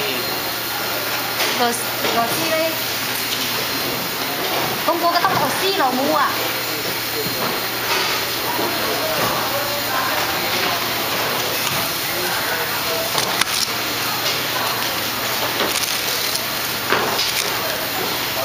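Steady hiss of workshop room noise with voices in the background, including a laugh about halfway through, and a few small sharp clicks of parts and wires being handled on the bench.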